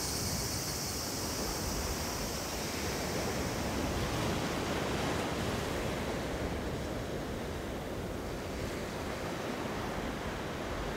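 Sea surf washing steadily, a continuous rushing hiss with a little wind, swelling slightly about four seconds in and then easing.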